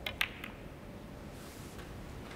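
Two sharp clicks close together near the start, a snooker cue tip striking the cue ball and the cue ball striking the black, then a quiet arena hush.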